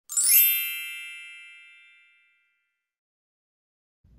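A bright chime: a quick upward sweep of bell-like notes that merges into one ringing chord and fades out over about two seconds.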